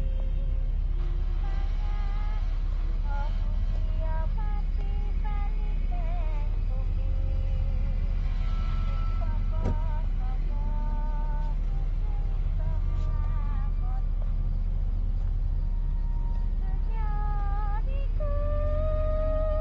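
Horror-film suspense soundtrack: a steady low rumbling drone with faint, short wavering tones scattered over it, and a single sharp click just under ten seconds in.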